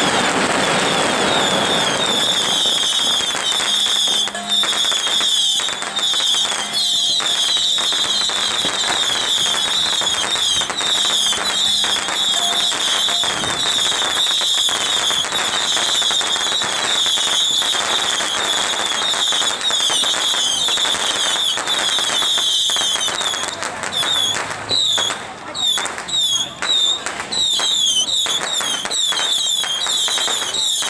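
Strings of firecrackers going off in a continuous dense crackle, set off for a passing Mazu palanquin procession; the bangs thin out with short gaps near the end.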